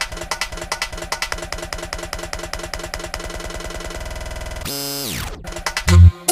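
Electronic dance music (vixa) in a build-up: a fast run of repeated synth and drum hits grows quicker, then a steeply falling sweep about five seconds in, ending on a heavy bass hit as the beat drops.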